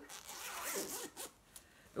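Zip on a fabric project bag being drawn along its track, a rasping run lasting a little over a second before stopping.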